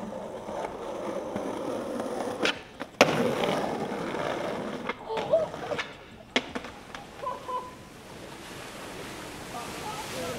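Skateboard wheels rolling on pavement, with a sharp pop about two and a half seconds in and a loud landing clack half a second later. The rolling goes on after it, with a few lighter clacks of the board a few seconds later.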